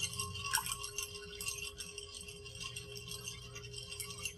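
Ice cubes clinking and rattling rapidly against the sides of a pitcher of white wine as it is stirred.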